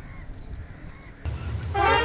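Low outdoor rumble, then a sudden change a little past halfway, and a brass band starts playing loudly near the end.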